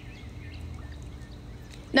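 Steady low outdoor background hum with a faint steady tone, and a few faint bird chirps.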